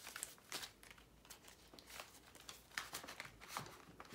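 Faint rustling and crinkling of paper bills and clear plastic binder envelopes being handled, with scattered light clicks.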